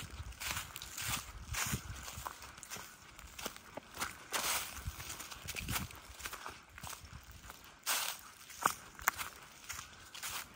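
Footsteps through a thick layer of dry fallen leaves on a forest trail, at a steady walking pace of about two steps a second.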